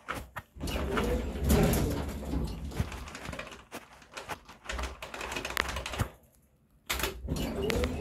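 Otis elevator's recorded voice announcement playing muffled and garbled from the car's speaker, mixed with clicks of the car's push buttons being pressed. It breaks off briefly about six seconds in, then resumes.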